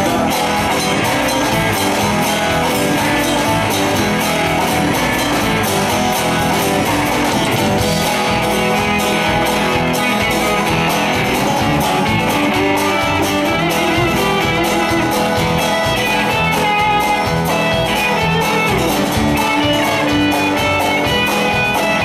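Live blues-rock band playing an instrumental passage without vocals: a guitar melody over strummed acoustic guitar, electric bass and drum kit.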